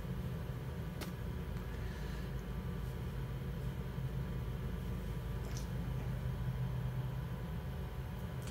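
A steady low hum, with one light click about a second in.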